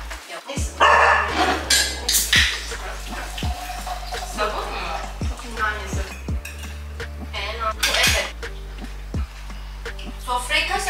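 Cutlery and plates clinking during a meal, with a few brief bits of talk, over background music with a steady bass line and beat.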